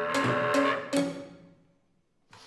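Contemporary chamber music for clarinet, violin, cello and piano: a held chord breaks off into three sharp accented strikes in the first second, which die away into silence.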